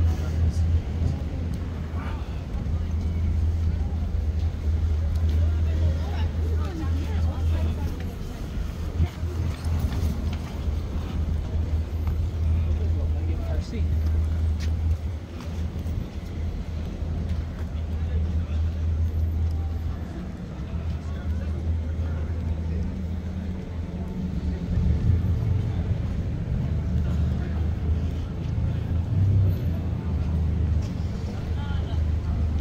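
Busy city street ambience: a steady low rumble of traffic with passers-by talking.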